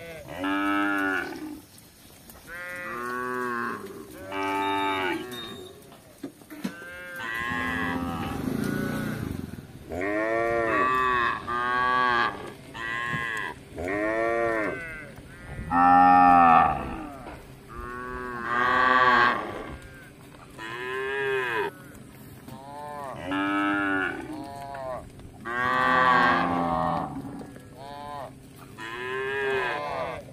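Cattle mooing, one call after another, about sixteen calls each rising and falling in pitch, some short and some drawn out; the loudest comes about halfway through.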